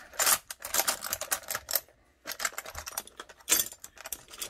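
Small hard pieces clicking and rattling in a container as they are sorted through by hand, in quick runs of clicks, a short pause about halfway, and a louder clatter near the end.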